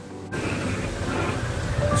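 Small robot car's two yellow plastic DC gear motors running, a steady whir with the wheels rolling over a smooth surface as the car drives forward; it starts about a third of a second in.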